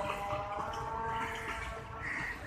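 Passenger train hauled by a GEU-40 diesel locomotive receding down the line: a low, steady rumble with several faint, steady ringing tones from the wheels and rails.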